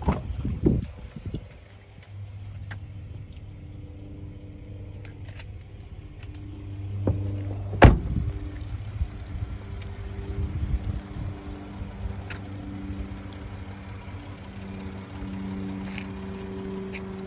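Wind rumbling on a phone's microphone outdoors, over a steady low hum, with one sharp knock about eight seconds in.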